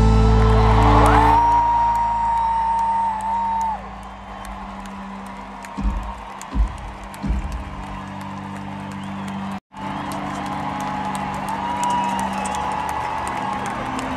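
Live band music with a sustained chord fading out over the first few seconds, then crowd cheering and whooping in a large arena. A few low thumps come in the middle, and the sound cuts out for an instant about two-thirds of the way through.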